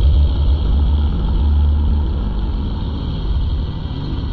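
A loud, steady low rumble, with little above it.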